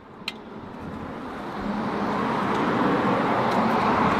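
A road vehicle approaching: a rising hiss of tyres and engine that builds over about two seconds and then holds steady. A single faint click comes just before it.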